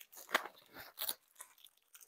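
White packing wrap crinkling and rustling in short crackles as an item is unwrapped by hand, the loudest about a third of a second in and another about a second in.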